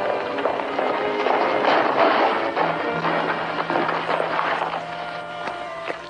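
Orchestral background score playing continuously, a busy mix of sustained notes and textured accompaniment.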